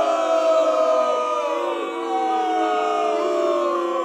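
A crowd of many voices cheering together in long, held, wavering notes. The sound is thin, with no bass.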